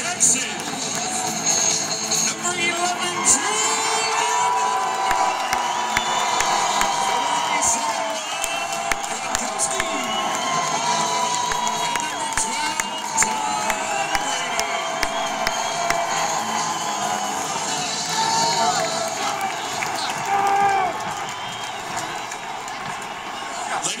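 Large stadium crowd cheering and yelling steadily, with music playing over the stadium loudspeakers.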